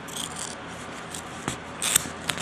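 Hands handling crumpled silvery wrapping around a plant, with soft rustling and crinkling, a short click about one and a half seconds in, and a louder crinkle near the end.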